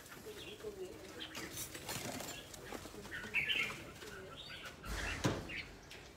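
A dove cooing softly in low, repeated coos, with a brief knock about five seconds in.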